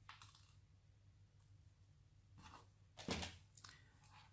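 Near silence broken by a few short snips of small side cutters cutting out the plastic cross-divider and stripping cloth of a Cat6 cable. The clearest snip comes about three seconds in.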